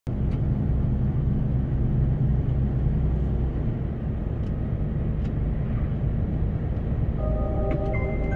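A road vehicle driving, heard as a steady low engine-and-road rumble. Near the end, music begins with a melody of clear held notes.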